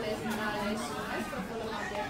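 Indistinct voices of people talking in an indoor market hall, with no words clear enough to make out.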